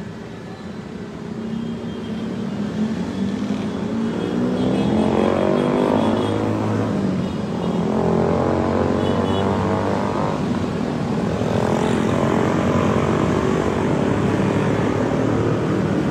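A motor vehicle engine getting louder over the first few seconds, then running with its pitch rising and dropping back several times, as when a vehicle accelerates through its gears.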